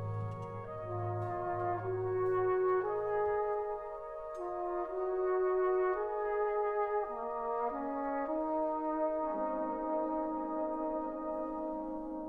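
Brass band playing slow, held chords. The low basses drop out about three seconds in, leaving the upper brass moving from chord to chord.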